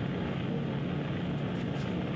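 Steady hiss with a low hum from an open telephone line carried on air, with no voice coming through.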